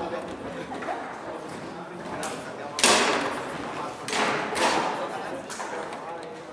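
Foosball play: the ball being struck by the table's player figures and knocking against the table, with rods clattering. There are several sharp knocks, the loudest about three seconds in, ringing in a large hall.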